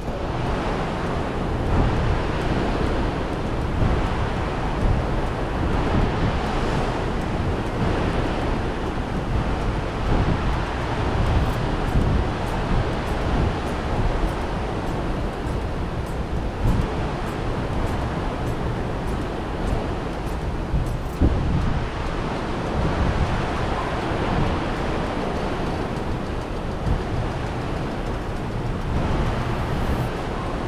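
Sea water rushing and churning along the hull of a moving cruise ship, a steady rush of waves with wind buffeting the microphone.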